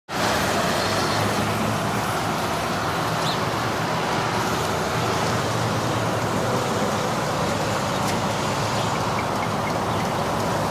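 Steady city traffic noise: a constant road rumble of passing cars with no distinct single vehicle.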